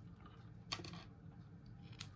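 Small craft scissors snipping satin-like open weave ribbon off a tied bow: one short, quiet snip under a second in, with faint handling clicks around it.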